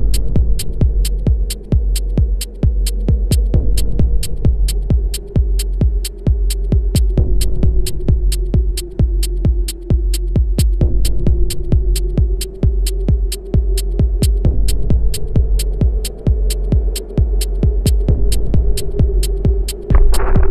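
Minimal techno track: a steady, throbbing low kick-and-bass pulse under crisp hi-hat ticks about twice a second, with a held synth tone that slowly sags in pitch and creeps back up. A brighter synth wash comes back in right at the end.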